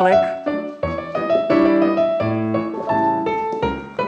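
Piano music playing a steady, even-paced accompaniment of struck chords, with a low bass note about every second and a half.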